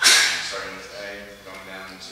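A sudden sharp noise at the very start, fading over about half a second, followed by a voice.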